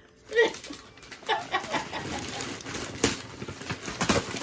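Wrapping paper on a gift box crinkling and rustling as the present is handled, with a few short laughs early on.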